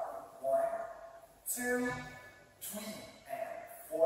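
A man's voice in short bursts about once a second, with no clear words.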